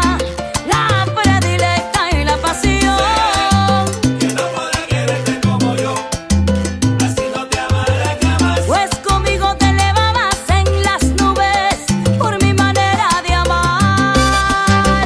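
Salsa music from a full band: a bass line moving note to note under melodic lines and continuous percussion.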